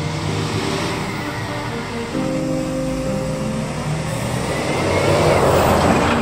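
Background music with a cartoon vehicle sound effect of the truck speeding off: a rushing whoosh that swells to its loudest near the end.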